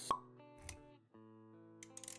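Intro music with sustained synth-like chords and a sharp pop sound effect just after the start; a soft low thump follows, and the music drops out briefly before the chords return about a second in.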